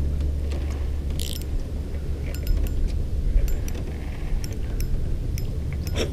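Spinning reel being cranked to bring in a hooked smallmouth bass, with scattered light clicks from the reel over a steady low rumble.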